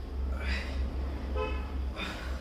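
A man breathing out hard with the effort of a dumbbell triceps kickback, with a forceful exhale about half a second in and another at the end. A brief horn-like toot comes about one and a half seconds in, over a steady low hum.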